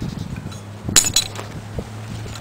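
Metal clinking as galvanized pipe fittings and a pipe wrench knock together in the hands, with two sharp clinks close together about a second in.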